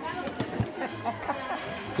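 Background chatter of several voices, with a few short knocks of knives cutting cooked meat on a table.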